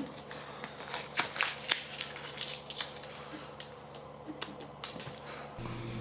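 Painter's tape being peeled off a wooden cabinet leg and handled: light, scattered clicks and crackles.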